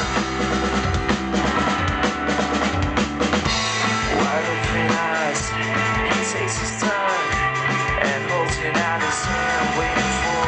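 A rock band playing live: electric guitars and bass over a steady drum-kit beat, heard from among the audience in a small venue.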